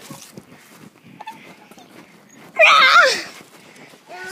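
A single short, loud cry about two and a half seconds in, its pitch wavering and then falling away.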